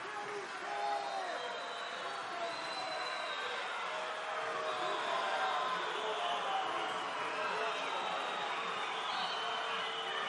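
Football stadium crowd noise: many voices shouting and calling at once in a steady, even din, with no single voice standing out.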